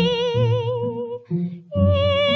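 Woman singing a 1948 popular song from a 78 rpm shellac record, holding one long note with strong vibrato over instrumental chords. The note ends just after a second in, and after a short breath a new note begins near the end.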